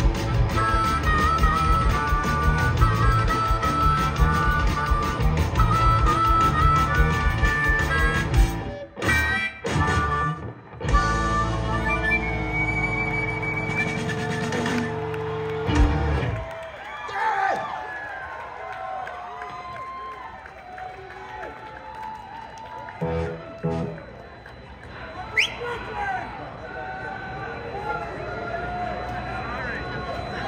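Live punk rock band with electric guitars, bass and drums playing fast, then a few stop-start hits and a long held chord that ends on a final hit about 16 seconds in. After that comes crowd cheering and chatter.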